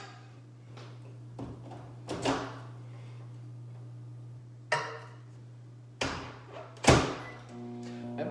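A handful of separate knocks and thunks from kitchen items being handled, over a steady low hum. The loudest is a sharp knock near the end with a short ring after it.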